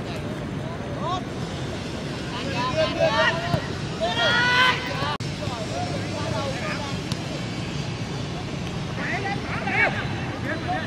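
Players shouting short calls to each other during play over a steady background rumble, the loudest a long held shout about four seconds in.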